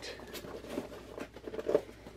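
Small cardboard shipping box handled and its flaps pulled open: irregular scraping and rustling of cardboard against cardboard and hands.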